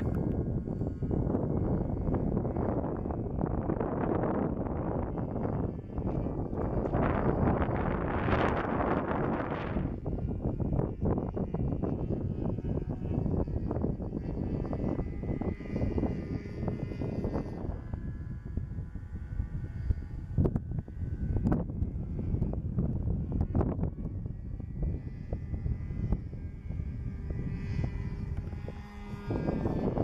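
Engine of a Phoenix Decathlon .46 radio-controlled model airplane running in flight, a faint buzz heard under heavy, gusty wind rumble on the microphone.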